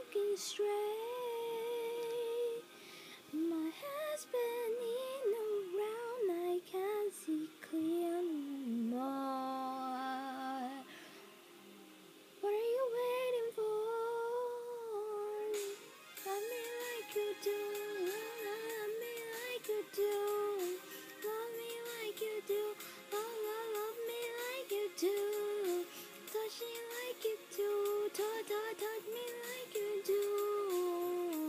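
A young woman's voice singing a pop ballad melody, in sustained notes and runs that are partly hummed and carry no clear words, with a short pause about eleven seconds in.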